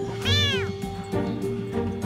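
A tiny kitten meowing once, a long cry that rises and then falls in pitch: the distress meow of a scared kitten. Background music plays underneath.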